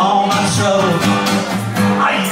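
Live acoustic band music: a strummed acoustic guitar with a man singing and a tambourine shaken in time.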